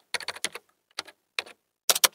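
Typing on a computer keyboard: a quick run of key clicks, then a few spaced-out keystrokes, and a loud pair of clicks near the end.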